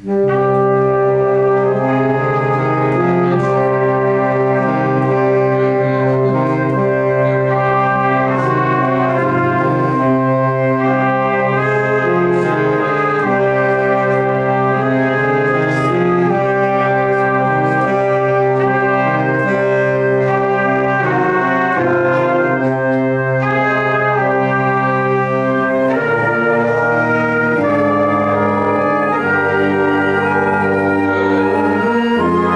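A small brass ensemble playing a slow chordal passage: held chords that move every second or two, all parts coming in together just after the start and playing on steadily.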